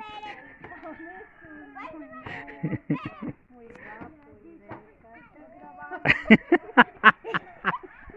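Indistinct talk of adults and children, then a loud burst of laughter near the end, in rapid pulses about five a second.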